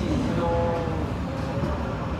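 MTR East Rail line train moving along a station platform, heard from inside the carriage: a steady low rumble of wheels and running gear.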